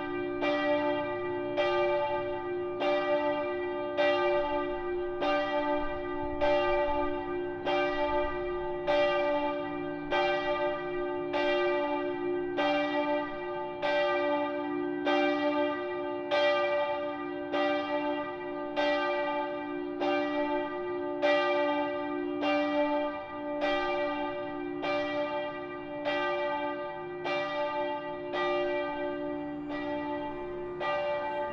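Church bells ringing in a steady, even peal, a little faster than one stroke a second, each stroke ringing on into the next.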